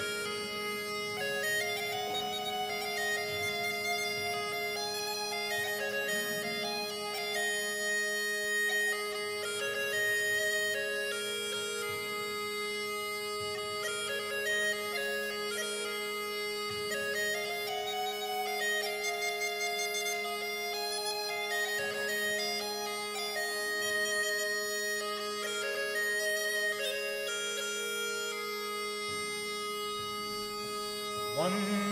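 A bagpipe playing a lively melody on the chanter over a steady, unbroken drone.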